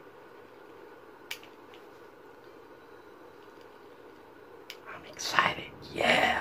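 Quiet room tone with a single sharp click a little over a second in. Near the end comes a short, louder rustling burst as the metal fidget-spinner lighter is handled close to the microphone.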